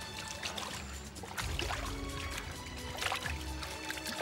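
Background music of held tones and slow low bass swells, over scraping and crumbling of earth as hands dig soil away from a buried stone slab.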